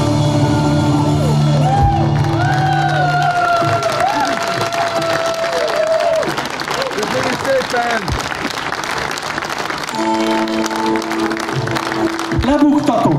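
A live band's song ends on a held chord, followed by audience applause and cheering with long whistles. Near the end, steady held instrument notes start again.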